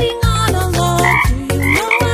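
Cartoon frog croaks over an upbeat children's song with a steady bass beat and a sung line.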